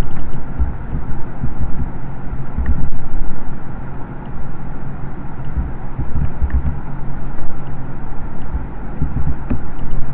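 Steady low background rumble with a mains-like hum, uneven low thumps and a few faint clicks.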